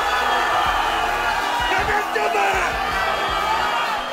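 Arena crowd noise: many overlapping voices shouting and cheering at a steady level.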